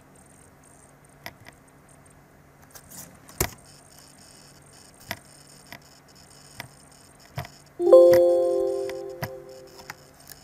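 Scattered mouse clicks and keystrokes on a computer. About eight seconds in, a loud computer alert chime sounds and fades out over about two seconds.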